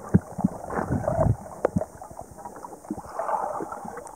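Underwater gurgling of a diver's exhaled air bubbles, with many irregular small pops and clicks, busiest about a second in and again around three seconds in.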